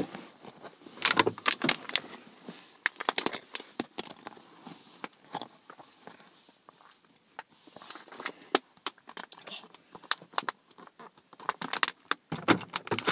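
Scattered clicks and crackles from a plastic water bottle being handled and drunk from, coming in short clusters with quieter gaps between.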